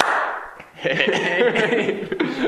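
A sudden whoosh that fades away within about half a second, followed by two men laughing.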